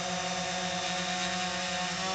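DJI Phantom 4 Pro quadcopter hovering a few metres away, its propellers making a steady, even buzz with a clear pitch.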